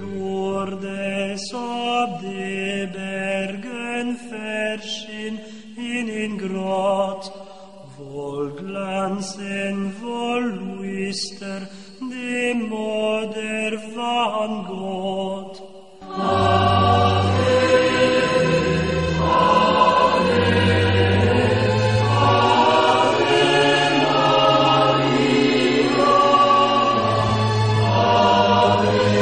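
Sung religious chant: voices singing in flowing phrases with sharp consonant hisses. About 16 seconds in it gives way suddenly to fuller, louder choral music with a low bass line.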